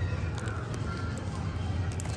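Shop ambience: indistinct background voices over a steady low hum, with scattered light clicks.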